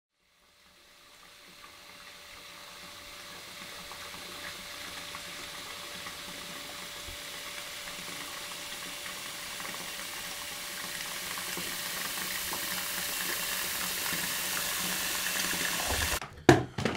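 A hissing, rushing noise that swells steadily louder over a faint low hum, then cuts off abruptly at the end.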